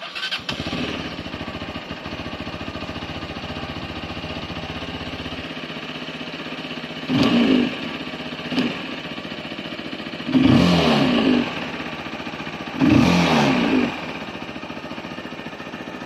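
Remapped 125cc motorcycle engine started on the electric starter, catching at once and idling steadily. It is then revved in throttle blips: one about seven seconds in, a short one after it, and two longer ones later, each dropping straight back to idle.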